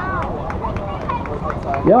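Open-air city ambience during a pause in a speech: a steady low rumble with faint scattered voices from a seated crowd and a few light clicks. A man's voice comes back with a short 'Ja' at the very end.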